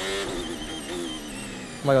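Onboard audio of a Formula 1 car's engine, played back, running at low speed with its pitch dipping and rising as the revs change.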